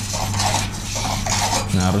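Servo motors of a Robosen Optimus Prime robot toy whirring and clicking as it swings its arms, over a steady low hum.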